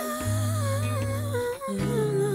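Background music: the intro of a slow song, a wordless hummed vocal melody over steady held bass notes.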